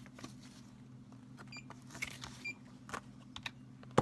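Faint scattered clicks and taps of hands working at a pharmacy counter, over a steady low hum. Two short high beeps sound near the middle, and a sharp thump comes right at the end.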